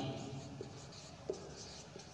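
Marker pen writing on a whiteboard: faint scratchy strokes, with a couple of small taps of the pen on the board.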